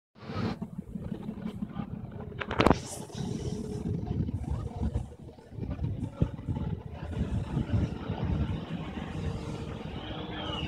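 Wind buffeting a phone's microphone: an uneven, gusting low rumble that swells and dips throughout. A single sharp knock sounds a little over two and a half seconds in.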